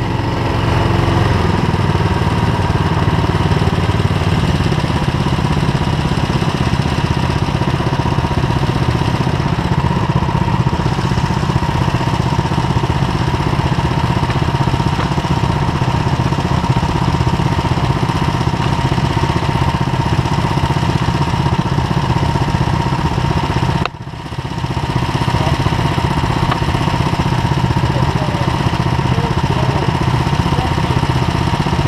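Go-kart engine idling loudly and steadily close by, with a steady, even beat. The sound drops out briefly about three-quarters of the way through, then comes back.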